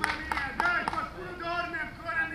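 Men's voices calling and chatting across an outdoor football training pitch, with a few sharp knocks in the first second.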